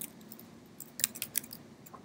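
Computer keyboard keystrokes: a quick run of several key clicks about a second in, then a single click near the end, as a short terminal command is typed.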